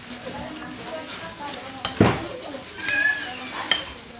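Metal spoon scraping and clinking against a china plate of rice, with a few sharp clinks about halfway through, the loudest near the middle. A brief high-pitched squeal comes about three seconds in.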